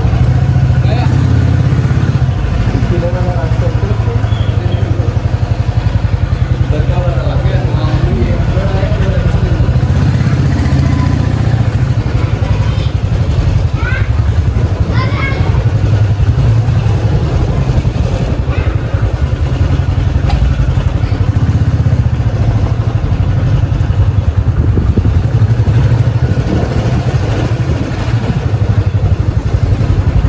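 Motorcycle engine running steadily at low speed, a low hum, with voices heard now and then over it.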